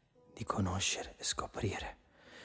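A quiet spoken voice, low in level, over a faint held tone in the song's soft passage.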